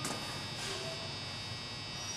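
Faint, steady electrical hum and buzz.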